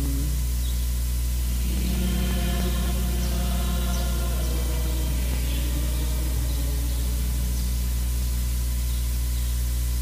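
A steady low hum, with faint music in the background from about two to six seconds in.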